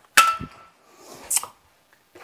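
Handling noise: a sharp clink that rings briefly just after the start, then a short rustle about a second later.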